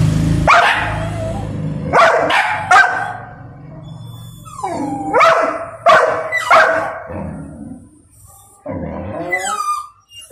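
Young golden retriever barking: a string of short, sharp, loud barks in the first seven seconds, then a longer, drawn-out whine near the end. This is frustrated, demanding barking from a dog kept from its food.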